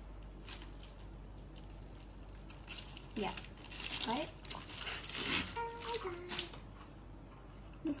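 Thin plastic wrapping crinkling and tearing as it is pulled open by hand, in several short bursts.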